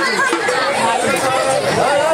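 Speech: actors declaiming stage dialogue in a Bengali folk play.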